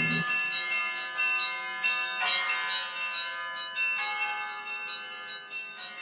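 Background music of ringing bell tones, a new stroke every second or two, each ringing on while the whole slowly fades out.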